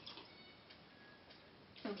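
Near silence: quiet room tone with a few faint clicks. A woman's voice starts near the end.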